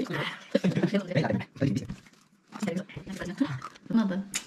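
People talking, with a short pause about halfway through.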